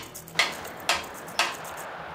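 Four sharp, evenly spaced ticks about half a second apart, over a faint background hiss.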